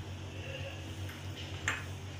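A steel ladle lightly ticking against the side of a stainless steel saucepan of milk, with one sharper tick near the end, over a steady low hum.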